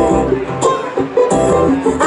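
Live acoustic string band playing an instrumental passage: strummed acoustic guitar over plucked upright bass, with fresh notes struck about every half second.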